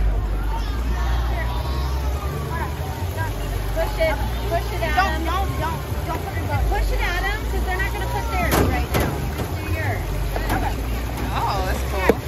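Children's voices talking and calling out over a steady low rumble, with a couple of sharp knocks about eight and a half seconds in.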